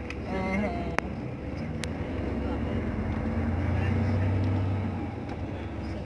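A moving vehicle's engine and road noise heard from inside: a low drone that grows louder in the middle and eases toward the end, with a couple of sharp clicks early on.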